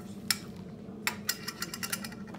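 Plastic parts of an anatomical eye model clicking and tapping as they are handled and fitted together: one click, then a quick run of about eight clicks in the second half. A steady low hum lies underneath.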